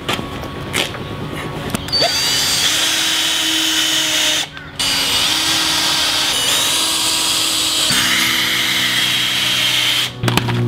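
Cordless drill running into the corner of a timber frame, its motor whining steadily in two long runs with a short break about halfway. A few knocks from handling the boards come before it starts.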